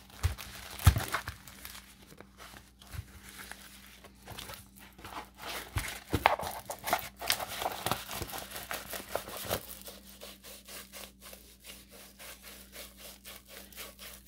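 Plastic sleeve and paper crinkling and rustling as a rolled diamond painting canvas is unwrapped and unrolled by hand, with a sharp knock about a second in.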